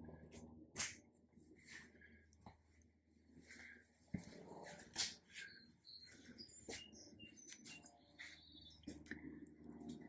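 A quiet room with a wall light switch clicked about a second in, followed by a few faint scattered clicks and short, thin high-pitched squeaks.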